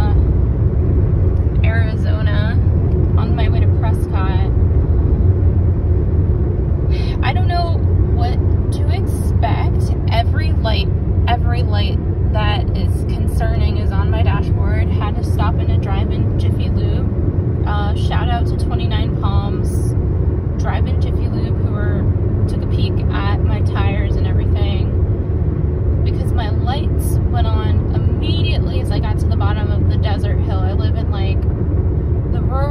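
Steady low road and engine rumble inside a Hyundai car's cabin, cruising at highway speed, with a voice heard on and off over it.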